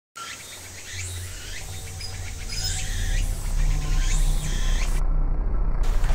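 A bird calling in repeated sweeping chirps about every one and a half seconds, over a low steady hum that grows louder. The high chirping cuts out briefly near the end.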